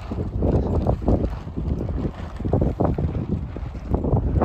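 Wind buffeting the microphone in irregular gusts, a heavy low rumble that comes and goes.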